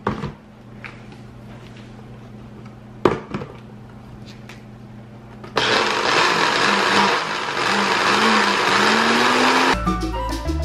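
Old countertop blender with a glass jar: a knock as the jar is set on the base, another about three seconds in, then the motor runs for about four seconds blending a thick guacamole salsa, its pitch rising near the end. The owner thinks the blender has given out.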